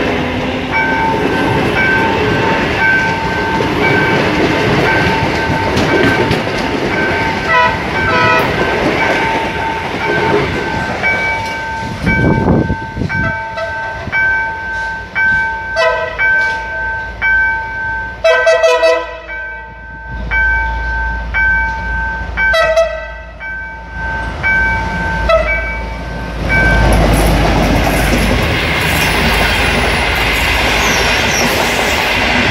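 A blue-and-white commuter multiple unit running past close by, then a locomotive-hauled long-distance train approaching that sounds its horn in several blasts. Its coaches rumble past near the end. A repeating two-tone beep sounds through most of the passage.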